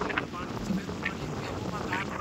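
Sutlej floodwater rushing and churning steadily, with wind on the microphone.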